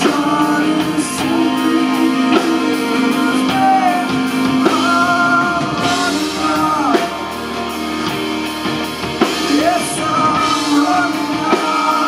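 Live rock band playing: strummed electric guitar, bass and drum kit, with a male voice singing over them.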